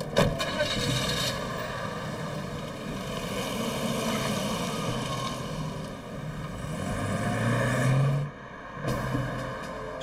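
A car door shuts with a thud, then a car engine runs as the car pulls away. The engine rises in pitch and loudness as it accelerates, then drops away suddenly near the end.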